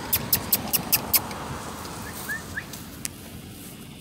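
Quick footsteps of a person running across grass, about five strides a second, fading off after about a second. Later come two short, faint, rising high chirps.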